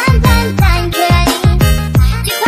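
Indonesian 'DJ TikTok' dance remix music, with a heavy bass kick that slides down in pitch about four times a second under a bending lead melody.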